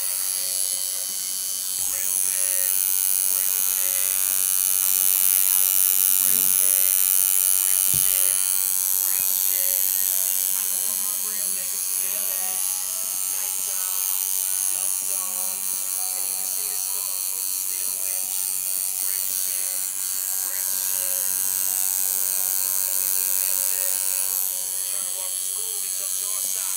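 Tattoo machine buzzing steadily while it works on a shaved scalp, a continuous high-pitched whine.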